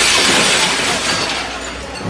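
Scrap metal released from a truck-mounted hydraulic orange-peel grab, crashing into the steel bed of a truck. It is a sudden loud clatter at the start that fades away over about a second and a half.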